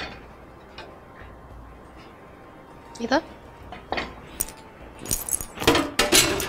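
Kitchenware handled on a countertop: a few light knocks, then a quick run of clinks near the end as a lid is set on the soup pot.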